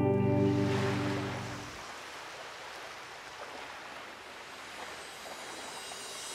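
Background music ends on a held chord about two seconds in, under a steady wash of surf that then carries on alone.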